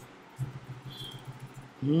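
Mostly quiet, with a faint low steady hum and one brief high tone in the middle. Near the end, a man's voice comes in with a 'hmm' and a short laugh.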